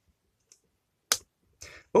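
A single sharp click about a second in from the toggle of a transparent DIN-rail RCD being worked to reset it after a trip. It won't latch because its earth-leakage trip-flag tang has popped out and must be pressed in first.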